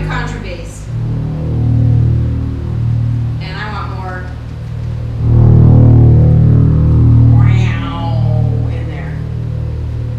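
Roland electronic organ playing held chords on its 'Female 1' choir voice over a deep sustained bass, swelling louder about five seconds in and easing back a couple of seconds later.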